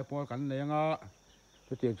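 A man speaking for about a second, ending on a long drawn-out syllable, then a pause, over a steady high-pitched drone of insects.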